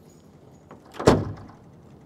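A single short puff of noise on a clip-on lapel microphone about a second in, over quiet room tone.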